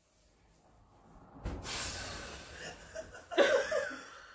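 A person's held-in laughter: a long breathy hiss of air, then a short voiced burst of laughter about three and a half seconds in.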